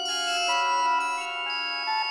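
Organ music: many sustained notes held and layered into chords, with new notes entering about every half second over the held ones.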